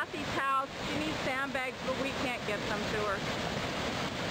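Muddy flash-flood water rushing through a desert wash in a steady, loud torrent of white water. A person's voice is heard over it, briefly near the start and again in the middle.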